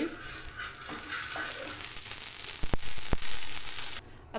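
Oil sizzling on a hot tawa as it is spread with a spoon, a steady hiss that builds from about half a second in. Two sharp clicks come near the end.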